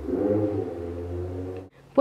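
A woman's quiet, indistinct voice over a steady low hum, which cuts off abruptly near the end.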